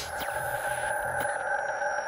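Synthesized logo-sting sound effect: a steady electronic chord held under thin, high tones that slowly fall in pitch, with a couple of faint ticks.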